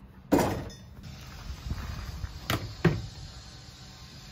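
A dull thump about a quarter second in, fading over most of a second, then two short knocks in quick succession past the middle: hard objects being handled and set down in a workshop.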